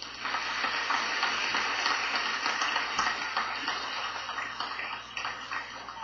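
Recorded crowd applause: a dense, crackling clatter that starts suddenly and tapers off near the end.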